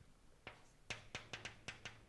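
Chalk tapping and clicking against a blackboard as a formula is written: a faint run of about seven short, sharp clicks starting about half a second in.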